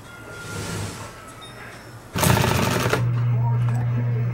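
Industrial sewing machine stitching in a short, loud run of rapid needle strokes a little after two seconds in, lasting under a second. Its motor then hums steadily.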